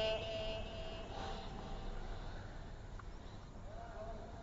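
The last stepped echo of a held recited note fading out through a sound system's echo effect. After that, a quiet pause with a low background hum and a couple of faint, brief sounds.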